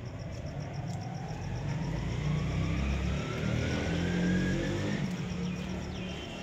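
A motor vehicle's engine running and speeding up, its whine rising steadily in pitch over several seconds over a low rumble that is loudest in the middle.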